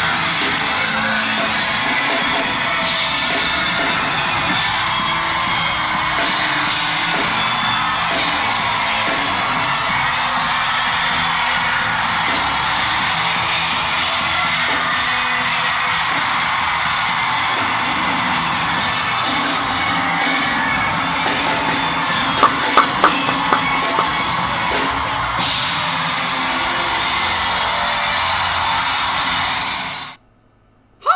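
Large concert crowd cheering and screaming over pop music, a dense continuous roar. A few short sharp sounds stand out about three-quarters of the way through, and it all cuts off suddenly at the end.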